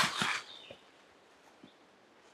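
A man's voice trailing off at the end of a sentence, then near silence: faint outdoor background with a few tiny ticks.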